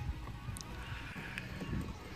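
Low rumble of wind on the microphone outdoors, with faint clatter and a few light ticks from plastic garden carts rolling over a bumpy dirt path.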